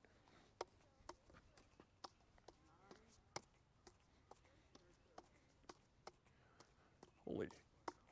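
Faint light clicks, about two a second, of plastic juggling clubs slapping into the hands as they are caught in a three-club cascade.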